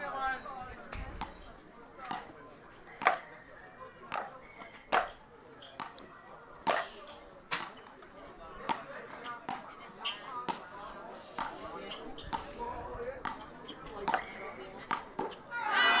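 Road tennis rally: the wooden paddles strike the ball and the ball bounces on the court, giving sharp knocks about every half second. Crowd chatter runs faintly behind.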